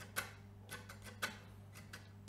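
Faint clicks of a pick lightly striking muted strings on a Gibson Les Paul Goldtop with P90 pickups, about two a second, over a steady low hum.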